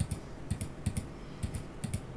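Light clicking of a computer keyboard and mouse: about five quick pairs of clicks spread over two seconds.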